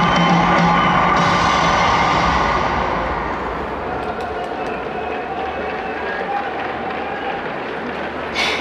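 Stadium PA music in a domed ballpark that dies away after about three seconds, leaving a fading echo under the roof with crowd noise beneath it.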